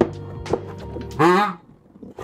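Background music with steady held tones, two short clicks from a cardboard game box being handled, and, about a second in, a short loud voiced sound whose pitch rises and then falls.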